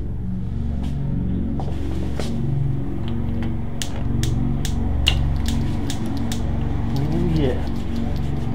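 Background music with sustained low notes, with a run of sharp, irregular clicks from about two seconds in.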